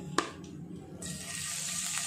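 Garlic and dried red chilli sizzling as they hit hot oil in a frying pan. There is one sharp click just after the start, and the steady hiss of the frying begins about a second in.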